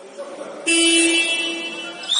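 Electronic scoreboard horn sounding for about a second and a half, starting about two-thirds of a second in: one steady, buzzy, low-pitched blast that fades slightly before it stops.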